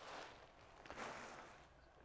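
Near silence with two faint, brief rustles of the folded nylon winch kite being handled and set down on the table.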